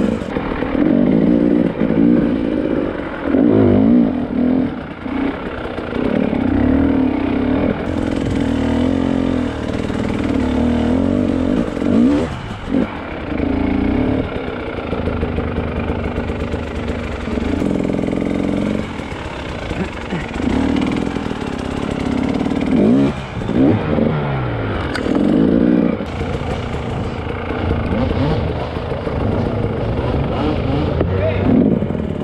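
A KTM 300 EXC two-stroke single-cylinder enduro motorcycle engine, revving up and down repeatedly as the bike is ridden slowly along a twisty forest trail. There are a few brief drops in engine note between bursts of throttle.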